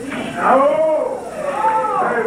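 A person's voice in long, drawn-out cries that rise and fall in pitch.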